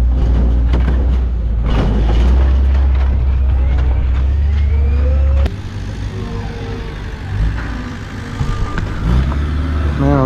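Diesel engine of a wheel loader running close by, a loud, steady low rumble that stops abruptly about five and a half seconds in. After that, quieter engine and yard noise from farther off, with faint rising and falling whines.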